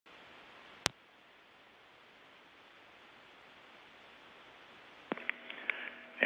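Faint steady background hiss, with one sharp click about a second in and a few smaller clicks near the end.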